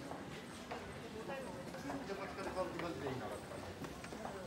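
Footsteps clicking on a hard floor, a step every half second or so, with faint voices of other people talking in the background.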